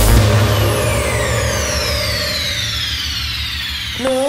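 Electronic dance music breakdown: a synth sweep of several pitched lines gliding steadily downward over a held low bass note, slowly getting quieter, with the beat stopped.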